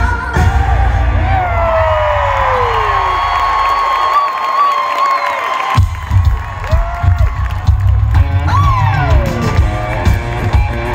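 Live pop-rock band with electric guitars playing loudly in a concert hall, recorded from among the audience, with the crowd cheering and whooping. The drums and bass drop out about halfway through under a long held note, then the full band comes crashing back in.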